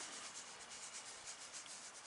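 Faint, steady rustling with soft fine ticks as lettuce seeds are sprinkled thinly by hand over loose soil.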